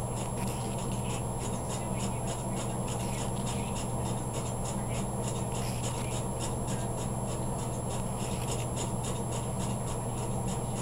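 Rhythmic scraping of a stick stirring tinted epoxy resin, about three strokes a second, over a steady low hum.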